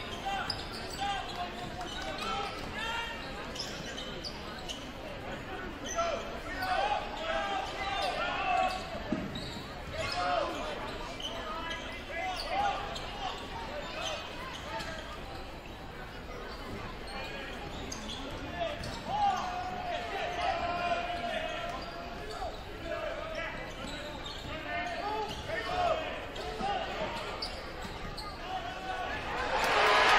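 A basketball being dribbled on a hardwood gym floor amid the chatter and shouts of a gym crowd during live play. At the very end the crowd noise swells sharply as a basket is scored.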